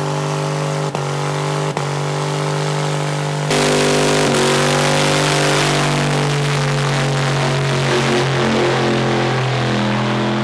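Pickup truck engine held at steady high revs during a burnout, its rear tyres spinning on pavement. The note dips briefly twice in the first two seconds, then about three and a half seconds in it gets louder and a harsh hiss of spinning tyres joins it.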